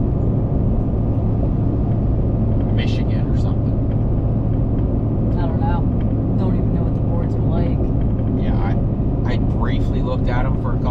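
Steady road and engine drone inside a pickup truck's cabin while driving at highway speed, with a low hum throughout.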